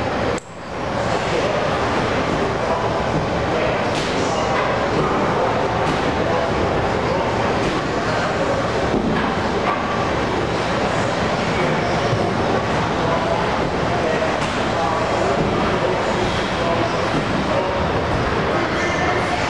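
Busy gym room noise: a steady rumble with indistinct voices in the background. There is a short dropout just under half a second in, and a faint click at about four seconds.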